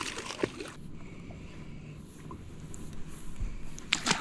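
Gentle water lapping and sloshing against a boat hull, low and steady, after a short burst of noise at the start.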